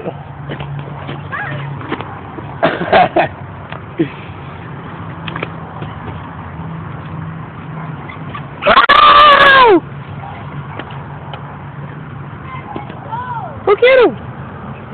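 A voice calls out once, loud and drawn out for about a second and falling in pitch, about nine seconds in. A steady low hum runs underneath, with a few short vocal sounds around three seconds in.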